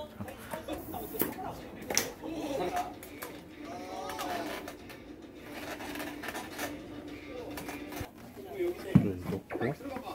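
Faint voices talking in the background of a small room, with a couple of sharp clicks about one and two seconds in.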